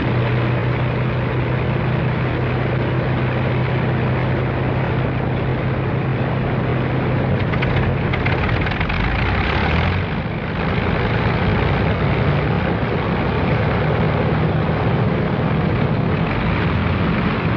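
Avro Lancaster bomber's Rolls-Royce Merlin V12 engines running, a steady propeller drone with a low hum. The sound dips briefly and shifts about ten seconds in, then carries on steadily.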